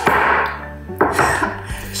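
Light background music, with a short rustle at the start and a knock about a second in as the ingredient containers, a plastic jar of baking soda and a paper bag of sugar, are handled on the counter.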